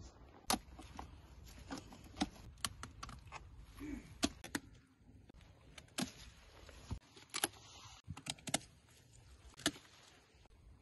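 Hand pruning shears snipping through pumpkin stems and dry vines: a series of sharp, irregularly spaced clicks and snaps.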